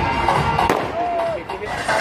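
Fireworks going off: a sharp bang as it opens and a louder one a little under a second in, amid voices and music.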